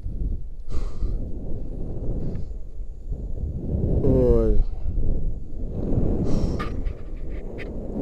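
A rope jumper panting and breathing hard into the body-worn camera's microphone while catching his breath after the jump, with a steady rumble of wind on the microphone. There is a short gliding voiced exclamation about four seconds in.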